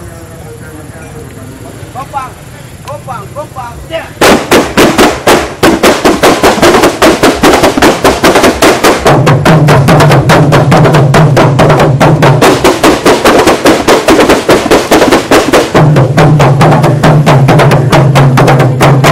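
A troupe of kompang, Malay hand-held frame drums, struck with the open hand, starts playing suddenly about four seconds in: a loud, fast, dense interlocking beat of many strikes. Before that, a murmur of crowd voices.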